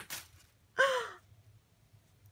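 A woman's quick breathy intake of breath, then about a second later a short sighing voiced "oh" that falls in pitch.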